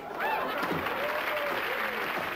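Sitcom studio audience applauding, with voices calling out over the clapping, including one long rising-and-falling call in the middle.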